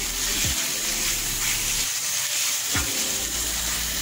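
Diced chicken and celery sizzling steadily in hot olive oil in a frying pan, stirred with a wooden spoon as the chicken browns.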